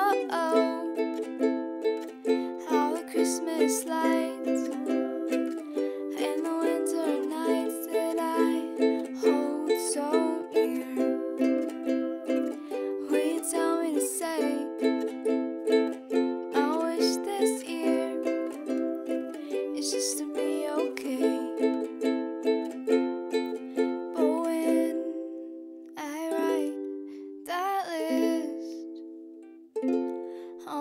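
Ukulele strummed in a steady rhythm, an instrumental passage with no singing. Near the end the strumming thins to a few separate strums with short gaps between them.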